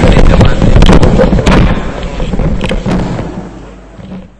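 Loud, dense crackling and knocking over a low rumble, loudest in the first second and a half and then fading steadily away.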